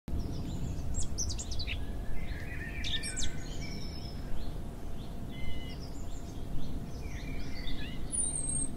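Several small birds chirping and calling in short bursts of song over a steady low rumble of background noise.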